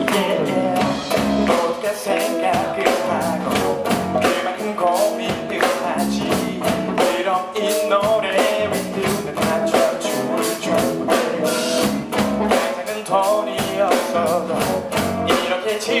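Live rock band playing: electric guitar over a drum kit keeping a steady beat.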